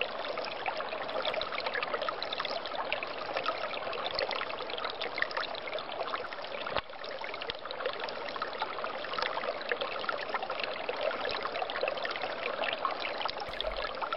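A small stream flowing under ice: steady trickling water with many tiny splashes, breaking off for an instant about seven seconds in.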